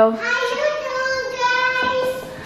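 A person's voice singing one long high note, held nearly steady for almost two seconds.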